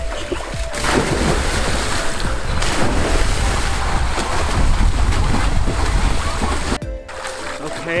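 Water splashing as a person jumps into a river and swims. The splashing starts loudly about a second in and breaks off suddenly near the end.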